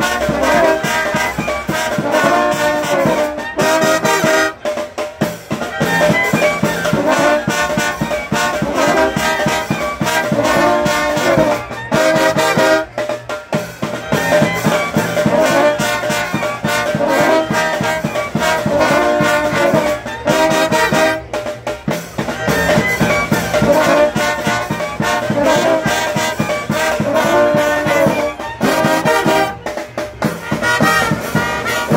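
Colombian porro brass band playing live: trumpets, euphoniums and tubas over a steady percussion beat. The tune runs in repeating phrases, with short breaks about every eight seconds.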